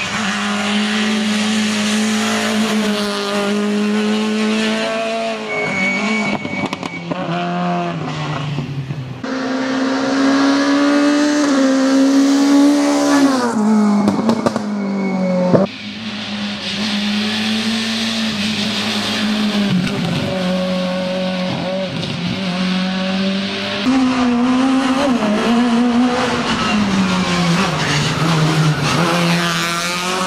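A Peugeot 208 rally car's engine revving hard at racing pace, its pitch climbing and dropping again and again as it shifts gears and brakes for corners. The sound breaks off abruptly a couple of times as the shot changes.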